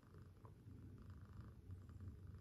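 Domestic cat purring faintly while being stroked, a low rumble that swells and fades in steady cycles.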